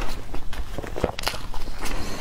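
Close-miked chewing of a mouthful of food, with short irregular clicks and crunches about two to three times a second.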